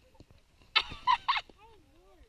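Women hikers' voices: three short, harsh honking vocal outbursts about a second in, followed by a fainter wavering voice, as one of them topples over under her heavy backpack.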